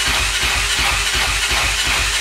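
Honda dirt bike engine running steadily and loud, with a lot of hiss over a fast, even low pulse.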